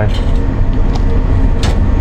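Steady low rumble from a chip shop frying range, with a few light clicks as battered food is placed into a cardboard box with tongs.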